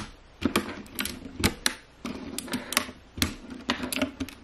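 Plastic keycaps being pushed back onto the blue-stemmed switches of a mechanical keyboard, an irregular run of sharp clicks and clacks, several a second and sometimes in quick pairs.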